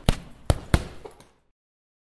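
Punch-impact sound effect, like blows landing on a heavy bag: three sharp thuds in quick succession within the first second, followed by two fainter ones.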